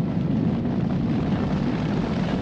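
Massed hoofbeats of a large body of cavalry galloping: many horses at once, a dense, steady rumble.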